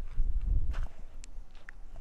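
Footsteps on a slope of loose, pebbly glacial till: dull thuds in the first second, then a few sharp clicks of small stones.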